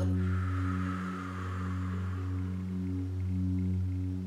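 A sustained low meditation drone of layered steady tones that swell and fade about once a second. Over it, a long breath is blown out in the first two seconds and fades away.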